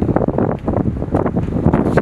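Loud, uneven wind noise buffeting a handheld camera's microphone outdoors.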